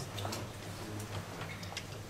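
Laptop keyboard keys clicking: a handful of irregularly spaced keystrokes as code is typed, over a low steady hum.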